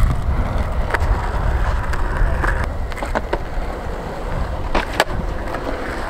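Skateboard wheels rolling on a concrete skatepark surface, a steady rumble broken by several sharp clicks and knocks.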